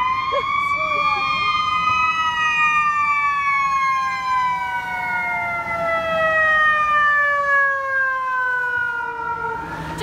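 Fire engine siren wailing: the pitch rises through the first two seconds, then falls in one long, slow glide.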